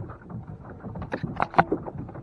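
Water sloshing around a small plastic boat, with a few sharp knocks against the hull about a second in.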